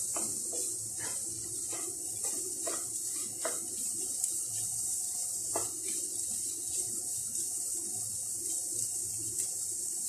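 Cauliflower and egg frying with a steady sizzle in a nonstick pan while a wooden spatula stirs and scrapes through it. There are several short scrapes in the first six seconds.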